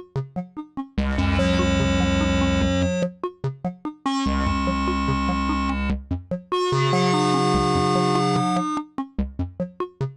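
Make Noise modular synthesizer, MultiWAVE voices shaped by PoliMATHS envelopes, playing a clocked sequence of short plucked notes about four a second. In three stretches the notes take long fall times and pile up into sustained, overlapping chords: a Pressure Points gate sent to PoliMATHS' Fall CV input lengthens the envelope of each channel activated while it is held.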